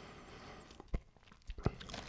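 Quiet mouth sounds of someone eating chips: faint chewing with a few sharp clicks and smacks, the first about a second in and a few more near the end.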